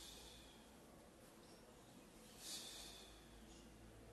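Faint, paced breathing of a person exercising on a mat: one breath right at the start and another about two and a half seconds in, over a low room hiss.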